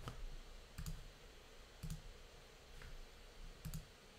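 About six faint, separate clicks of a computer mouse and keyboard, spread out over a few seconds above a low room hiss.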